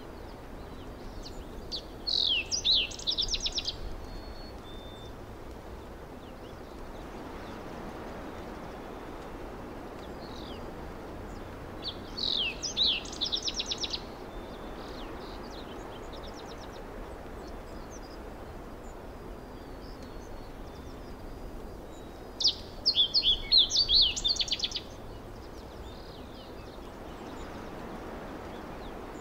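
Steady background ambience with a bird singing three short bursts of quick chirps, each about two seconds long and roughly ten seconds apart.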